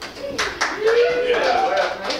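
A few scattered hand claps from a small audience, mixed with voices.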